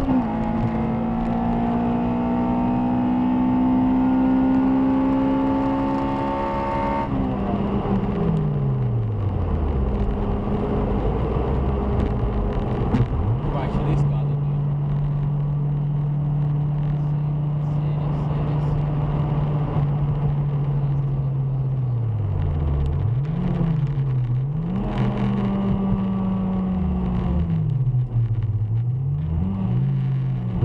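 Honda Civic Type R EP3's K20A four-cylinder engine heard from inside the cabin at speed: the revs climb slowly, fall away steeply about seven seconds in, hold steady for a while, then dip and rise again several times near the end.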